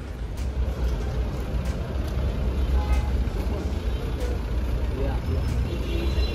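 Steady low rumble of outdoor urban background noise, with faint voices and a few small clicks.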